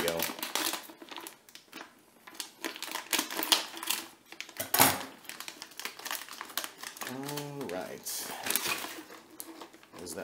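Thin plastic packaging bag crinkling and rustling in irregular bursts as it is handled and the kit parts and header card are pulled out, with a few sharper crackles partway through.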